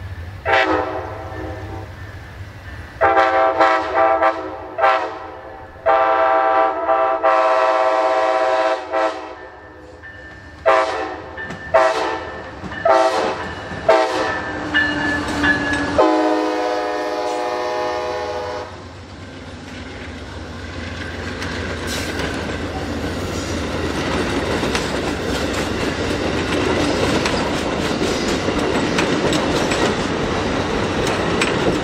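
Horn salute from an Amtrak passenger train led by a Siemens Charger locomotive: a series of long and short blasts on a multi-note air horn, the pitch dropping as the locomotives pass about halfway through. The horn then stops and the passenger cars roll past at speed, growing louder toward the end.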